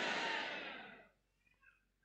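Soft, even background noise of the hall fading away over about the first second, then near silence.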